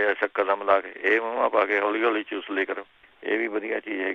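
Speech only: a person talking in Punjabi, thin-sounding as over a phone line, with a short pause about three seconds in.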